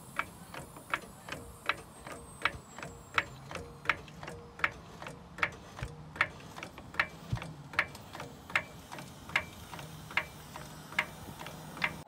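Daytona 2-ton hydraulic floor jack being pumped by its handle under a pickup truck's load, clicking in a steady rhythm of about two to three clicks a second as the saddle rises.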